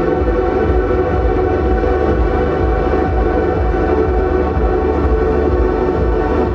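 Live ambient electronic music: a loud, steady, layered drone of held tones over a low pulsing beat, made with electric guitar run through effects pedals and a laptop.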